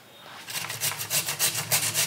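Beetroot being grated on a stainless steel box grater: quick, even rasping strokes, several a second, starting about half a second in.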